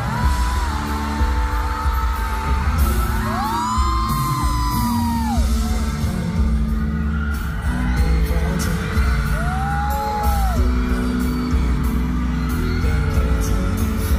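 Live pop concert music: a male singer singing into a handheld microphone over a loud band backing with a heavy bass beat. High, drawn-out screams rise and fall over the music about four and ten seconds in.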